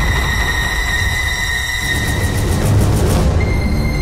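Tense, suspenseful background score: a low drone and a high held tone, with a quickly pulsing swell that builds from about halfway and cuts off sharply a little past three seconds in.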